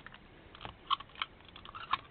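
Paper tickets and card handled on a journal page: several short crinkles and taps of paper, the sharpest about a second in and again near the end.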